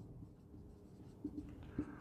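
Faint scratching of a marker pen writing on a whiteboard, a few light strokes in the second half.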